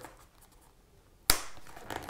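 A single sharp snap of cardboard as a hand prises at the art-print insert in a pen presentation box, a little over a second in, followed by a short, fading rustle of the card.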